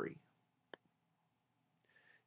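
A single short computer-mouse click about three-quarters of a second in, amid near silence; the end of a spoken word trails off at the very start.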